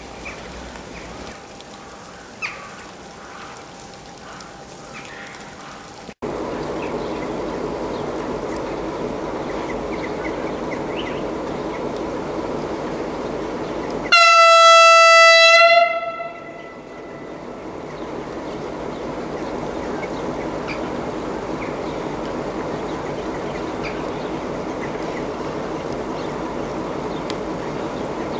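Romanian CFR electric locomotive sounding one long horn blast of about two seconds, a single steady note, as it pulls out of the station. Before and after the blast its steady running noise is heard, slowly building as the train gets under way.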